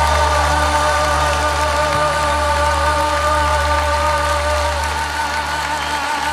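The song's final long sung note, held with vibrato over a sustained low backing chord and ending about five seconds in, with the audience applauding underneath.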